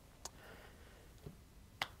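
Quiet studio room tone with a few faint, sharp clicks: one about a quarter second in, a smaller one past the middle, and a sharper one near the end.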